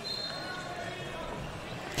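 Faint basketball court sound: distant players' voices and a brief high-pitched squeak at the start.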